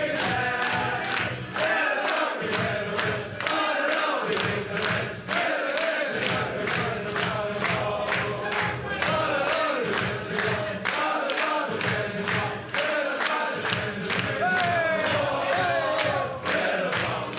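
A rugby league team's men singing their victory song together in a loud group chorus, marking a win. Under the singing runs a steady beat of sharp hits, about three a second.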